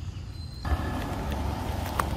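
Steady outdoor background noise with a low rumble, which jumps suddenly louder and fuller about half a second in.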